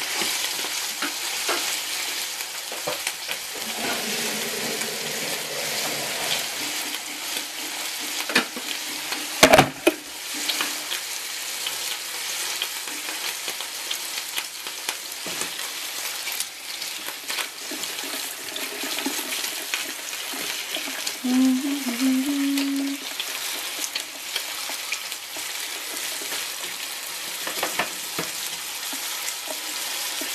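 Food frying and sizzling steadily in a pan, with tongs working through it, and one sharp clank about nine and a half seconds in.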